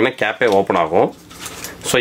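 A man speaking briefly, then light clicks and rubbing of a plastic dome camera housing being handled as it is opened.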